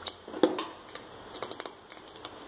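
A ladle stirring thick broken-wheat milk payasam in a metal pot, clicking and knocking lightly against the pot. There is a sharper knock about half a second in and a few quick clicks a little past the middle.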